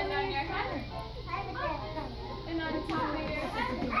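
Young children's voices chattering and calling out over one another while they play.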